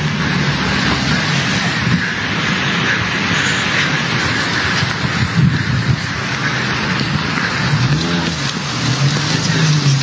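Street noise picked up by a mobile phone's microphone: a steady, loud rushing hiss with a motor vehicle's engine running beneath it, its pitch wavering near the end.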